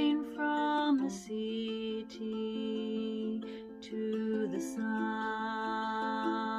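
A woman singing a slow folk song in long held notes, accompanied by her own ukulele.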